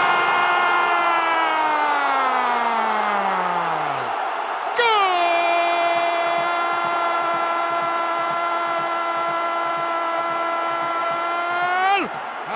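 A Spanish-language TV commentator's drawn-out goal cry over stadium crowd noise. The first held shout slides steadily down in pitch for about four seconds. The second starts about a second later and is held on one note until near the end.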